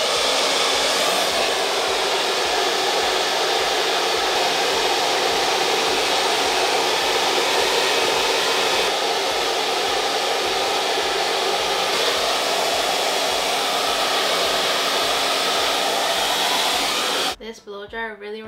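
BaBylissPRO Nano Titanium Portofino hair dryer running steadily: a loud, even rush of air with a faint hum under it. It cuts off near the end.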